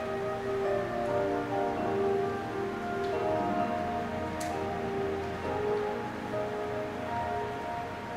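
Instrumental music starts: a song's accompaniment playing its introduction in held notes and chords, with no singing yet.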